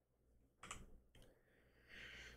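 Near silence with a few faint, short clicks about half a second and a second in.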